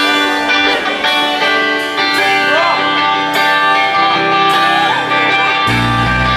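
Live rock band playing, led by sustained ringing electric guitar notes and chords. Strong low notes come in near the end.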